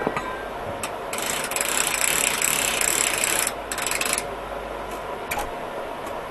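Metal ratchet mechanism on a portable sawmill's log bed clicking rapidly for about two seconds, then a short ragged rattle and a few single metal clicks.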